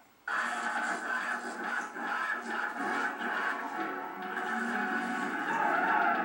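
Television playing in the background: a commercial's music bed, starting after a brief gap at the very beginning.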